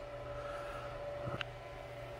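Quiet, steady electrical hum of the room, with one faint click about one and a half seconds in as the metal differential parts are handled.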